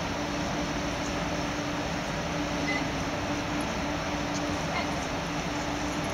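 Steady background noise of a large inflated air-dome hall: an even hiss with a low hum that breaks off now and then.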